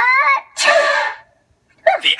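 A cartoon sneeze voiced for an elephant puppet: a rising 'ah-ah' wind-up, then a short noisy 'choo' about half a second in.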